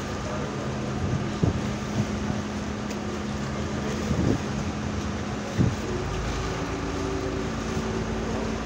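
A water bus's engine running with a steady low drone, over the rush of the wake along the hull and wind. There are a few short thumps about a second and a half, four seconds and five and a half seconds in.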